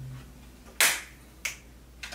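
An acoustic guitar's last chord ringing out and stopping just after the start, then two sharp hand smacks about two-thirds of a second apart, the first louder.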